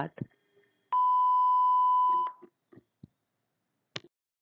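A single electronic beep: one steady tone about a second and a half long, starting about a second in, followed by a few faint clicks.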